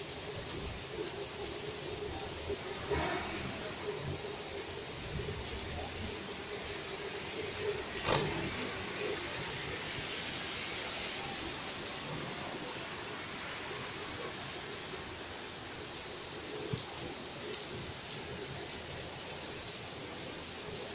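Heavy rain pouring down steadily, a constant hiss, with a brief louder thump about eight seconds in.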